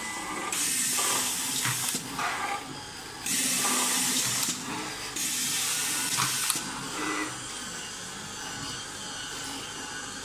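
Automatic screw-fastening machine at work: three bursts of rushing air hiss, each about a second and a half long, over a steadier, quieter hiss.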